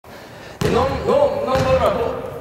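A basketball bouncing on a wooden gym floor, two bounces about a second apart, with people's voices over them.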